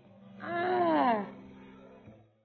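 A single drawn-out wordless vocal sound from a person, a moan-like "aww" that rises briefly and then falls in pitch, lasting under a second, over a low steady hum.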